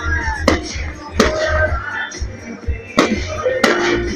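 Aerial fireworks bursting: four sharp bangs in two pairs, each pair about two-thirds of a second apart, with a short echo after each. Music and voices run underneath.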